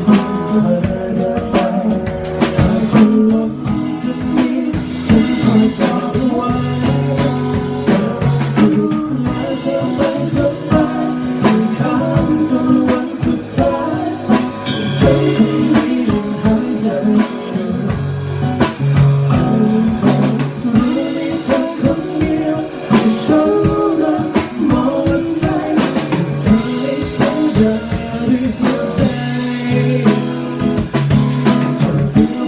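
A male singer performing a song live into a microphone, backed by a band with a drum kit and guitar keeping a steady beat.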